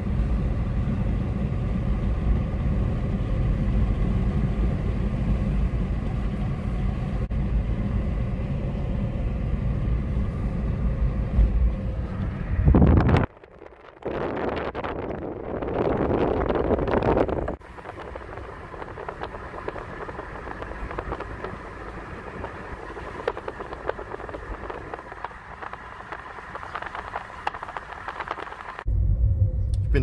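Steady road and engine noise inside a car's cabin while driving on a smooth asphalt road, with a deep low rumble. About a third of the way in it cuts off abruptly; a short louder stretch of noise follows, then a quieter, thinner hum until the car noise returns near the end.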